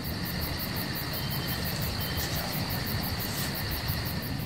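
Outdoor ambience of insects: a steady high drone with a fast, even pulsing about seven times a second, over a low rumble.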